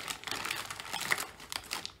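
Plastic potato-chip bag crinkling as it is handled and a chip is drawn out, mixed with the crunch of a chip being chewed: a dense, irregular crackle throughout.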